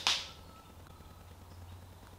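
A short, sharp noise right at the start, then quiet, even room noise with a faint low hum.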